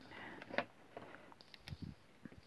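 Pen writing on paper: faint short scratching strokes with a few light taps.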